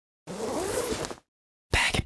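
A zipper being pulled for about a second, with a rasp that rises in pitch. Near the end a fast run of sharp clicks starts: the opening of the song.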